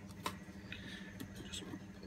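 A glass blender jug being lifted off its motor base: one sharp click about a quarter second in, then a few faint handling ticks.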